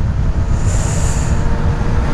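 Yamaha XJ6n's 600cc inline-four with a full carbon aftermarket exhaust, running at a steady cruising speed. Heavy wind rumble on the helmet-mounted microphone lies over the engine's even drone.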